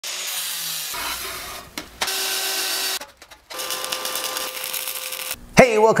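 Short, abruptly cut clips of power-tool work, the first an angle grinder's cutoff wheel cutting through sheet steel; a steady motor whine runs under the cutting noise in the later clips. A man starts speaking near the end.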